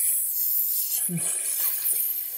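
A drawn-out 'th' sound being practised, breath hissing between tongue and teeth, with one short voiced sound about a second in.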